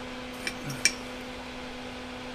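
A steady low hum, with two light clinks about half a second and just under a second in as tools and solder are handled on the workbench.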